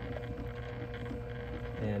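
Juki TL-2010 sewing machine humming steadily as it is switched on and tested after the needle clamp and thread guide have been refitted.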